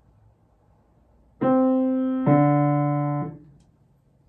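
Grand piano playing a melodic interval: a higher note struck about a second and a half in, then a lower note about a second later, a minor seventh below, both released together near the end.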